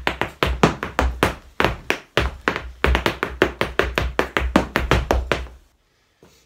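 Irish dance hard shoes (heavy shoes) beating out a hornpipe step on a floor mat: a rapid run of sharp taps, clicks and stamps, several a second, which stops just before the end.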